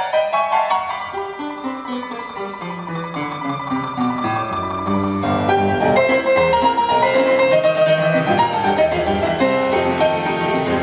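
Grand piano playing a jazz number in a live band setting, with upright bass underneath. The playing grows fuller and louder about five and a half seconds in.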